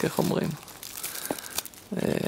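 CD packaging being handled: a cardboard CD sleeve and its small paper booklet rustling and crinkling as they are pulled apart and opened, with one sharp click a little over a second in.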